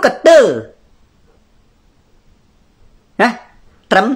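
A man speaking Khmer. A falling phrase ends well under a second in, then comes a pause of about two and a half seconds of near silence, and two short syllables follow near the end.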